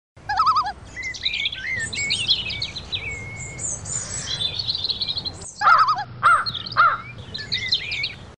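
Several birds singing and calling together: quick chirps, trills and whistled phrases, with a short break about five and a half seconds in.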